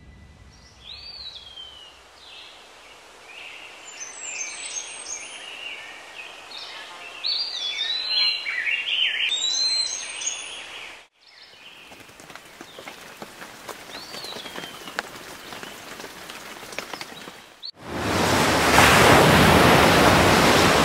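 Birds singing, a run of short whistled phrases over soft outdoor background noise. About eighteen seconds in it cuts to the loud, rushing noise of a wave breaking and splashing.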